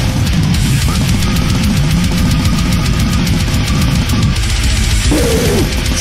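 Heavy metal song with pounding drums and heavy distorted guitars playing at a steady driving pace. Near the end, a sung voice comes in over the band.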